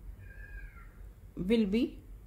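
A faint, high-pitched cry under a second long, rising a little and then falling in pitch.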